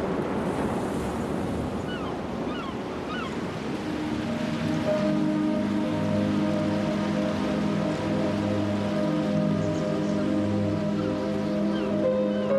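Ocean surf washing over soundtrack music with sustained chords. The surf is strongest in the first few seconds, and the music grows fuller from about four seconds in.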